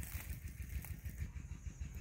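Faint outdoor background in open countryside: a low, uneven rumble and a light hiss, with small irregular bumps and no distinct event.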